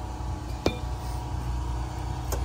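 Metal hood of a pulling semi being pulled down, giving one sharp metallic clink about two-thirds of a second in over a steady low background rumble.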